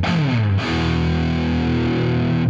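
Outro music on distorted electric guitar. It slides down in pitch, then holds a chord that keeps ringing.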